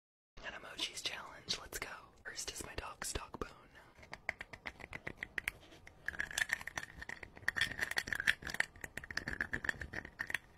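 Close-miked ASMR eating: whispering for the first few seconds, then dense crunching and mouth clicks as a piece of food is bitten and chewed right at a fluffy-covered microphone.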